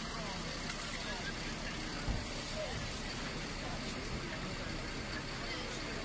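Steady outdoor background of vehicle engines running, with faint voices and a brief thump about two seconds in.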